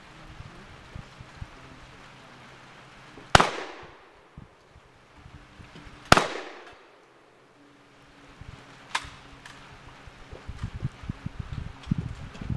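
Gunshots at an outdoor range: two loud shots about three seconds apart, each followed by a long fading echo, then a fainter shot about three seconds after the second.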